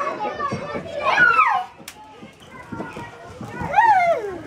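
Children's voices at a playground, with a child calling out in long falling-pitch cries, once about a second in and again near the end. A single sharp click comes just before the middle.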